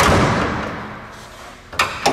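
A car's hood latch released by hand and the hood lifted: a loud thud at the start that rings out over about a second and a half, then a couple of sharp metal clicks near the end.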